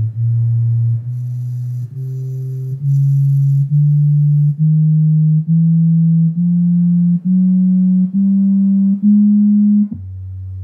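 KRK GoAux studio monitors playing their Auto ARC room-measurement test tones: a run of steady low sine tones, each just under a second long, stepping up in pitch one after another across about an octave.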